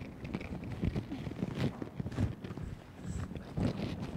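Irregular footsteps and a few light knocks and clicks as a person moves about searching on a stage floor.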